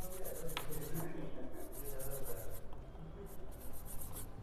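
A cleaning brush scrubbing a laptop motherboard around the USB ports: a dry scratching in quick strokes, about six a second, in short runs with brief pauses.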